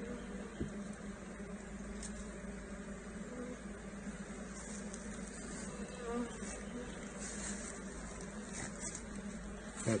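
A colony of honeybees buzzing around an open hive full of comb: a steady, even hum.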